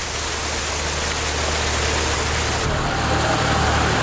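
Pumped floodwater gushing out of a large discharge hose onto the ground: a steady rushing noise over a low engine hum. The hiss thins out about two-thirds of the way through.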